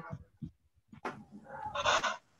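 A short animal call near the end, with a click about a second in.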